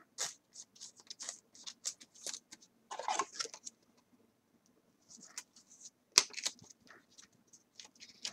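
A trading card being sleeved: a clear plastic penny sleeve crinkling and the card sliding into a rigid plastic top loader, heard as a faint series of scratchy rustles with a few sharper clicks and a short pause just before the middle.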